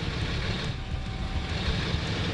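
Tow truck's engine running steadily with a hiss over it, while its wheel-lift is hooked under a van.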